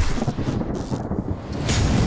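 Thunder-like sound effect for an animated logo intro: a dense, steady low rumble with a brief, sharp burst near the end.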